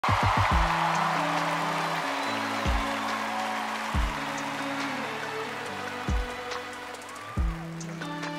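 Live band's instrumental intro: sustained low chords with a deep drum hit every second or two, a quick cluster of hits at the start. A wash of audience noise fades out over the first couple of seconds.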